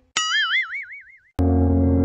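Cartoon 'boing' sound effect: a springy tone that rises and wobbles up and down in pitch, fading out over about a second. Shortly after, a steady low held tone with many overtones starts suddenly.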